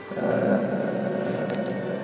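A man's voice holding one long, low, drawn-out hesitation sound between sentences.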